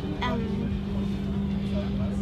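Steady mechanical hum holding one constant low pitch, with a rumble beneath it.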